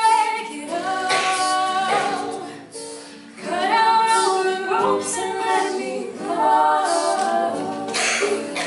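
Collegiate a cappella group singing: a woman's lead voice over group vocal harmonies, with acoustic guitar accompaniment. The phrases run continuously, with a short break about three seconds in.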